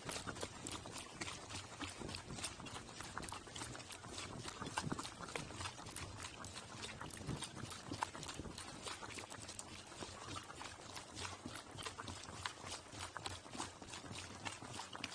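Pack burro's hooves on a dirt and gravel road at a walk, a quick, irregular run of clip-clop steps heard close up from a camera on its pack saddle.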